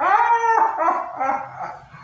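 A child's high-pitched, drawn-out wailing cry of dismay, loudest in the first half-second and then trailing off in broken bits of voice.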